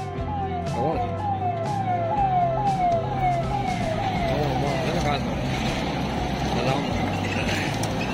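Siren of a motorcade's escort vehicle, a rising whoop that repeats about twice a second and stops about four seconds in. The convoy's cars then pass close by with a rush of engine and tyre noise.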